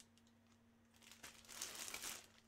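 Faint crinkling of a clear plastic bag as hands move and turn it, starting a little past a second in.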